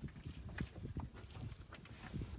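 Cheetah feeding on its kill: a few sharp crunching clicks over an uneven low rumble.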